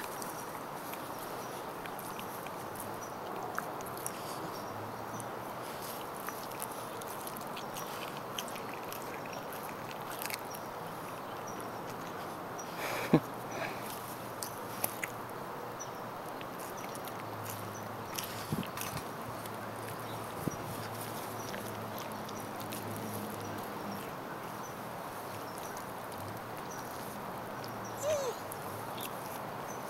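A dog biting and gnawing at a cooked T-bone steak: scattered small clicks and crunches of teeth on meat and bone, the sharpest about thirteen seconds in, over a steady background hiss.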